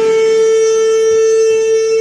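Alto saxophone holding one long, steady note, played by a learner of about seven months.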